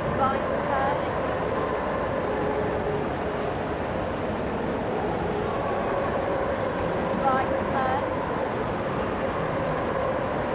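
A dog giving a short high-pitched whine twice, about half a second in and again around seven seconds, over the steady murmur and hum of a crowd in a large hall.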